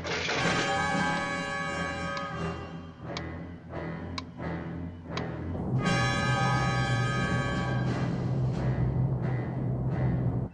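Tense orchestral score with timpani, holding sustained chords that swell louder about six seconds in.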